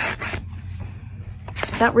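Paper rustling and rubbing as sticky notes are peeled out of the pages of a hardcover book. A burst comes at the start and a shorter one about a second and a half in.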